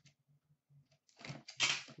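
Cardboard box and foil card-pack wrapper rustling and crackling as a hockey card box is opened and a pack is pulled out. It is faint at first and loud in the second half.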